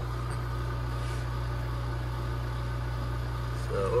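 Steady low hum of a sputter coater's vacuum pump running while the argon plasma sputters gold onto the samples.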